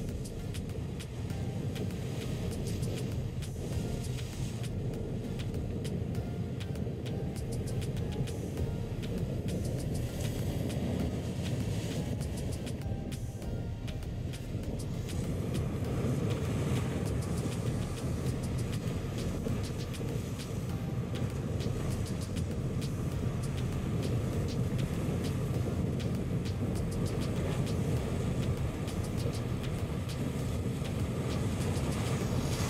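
A single 150 hp outboard motor running steadily under way through rough, breaking waves, with the rush of water and wind: a continuous low rumble that grows a little louder about halfway through.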